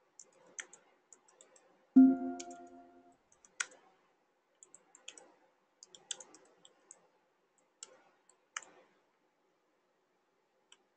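Quiet computer keyboard typing: scattered, irregular key clicks. About two seconds in, a brief pitched tone with several notes sounding together rings for about a second and fades; it is the loudest sound.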